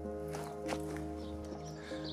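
Soft background music of held, sustained notes, with a few faint taps.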